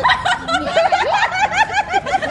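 A group of women laughing together, several voices overlapping, with quick, repeated high-pitched laughs.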